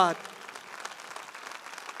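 Congregation applauding softly in a large auditorium, a light, even patter of many hands.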